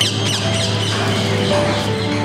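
Background music with sustained notes over a steady low drone. Birds call over it, with a quick run of short falling chirps in the first half second.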